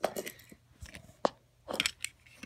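Small clicks and light knocks of die-cast metal toy cars being handled and touched together: a few separate clicks, then a quick cluster near the end.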